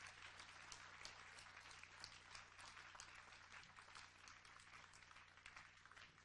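Faint scattered clapping from a concert audience, dying away after a number, over a low steady hum.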